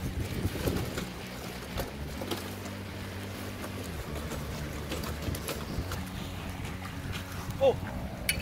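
Rubber boots wading and sloshing through shallow seawater over a rocky tidal flat, with scattered light knocks, over a steady rumble of wind on the microphone. A short startled exclamation comes near the end.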